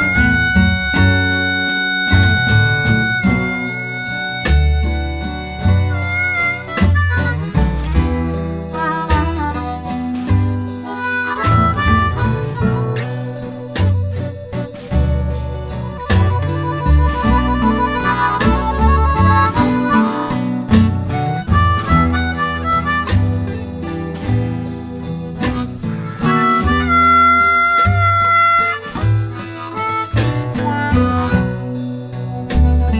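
Electric blues band playing an instrumental break with blues harmonica as the lead, over guitar, bass and drums. The harmonica holds long notes at the start, bends notes about six seconds in, and holds another long note near the end.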